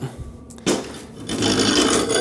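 Aluminium sluice box and its short metal leg scraping as they are handled and set down on the floor, starting about two-thirds of a second in and getting louder about halfway through.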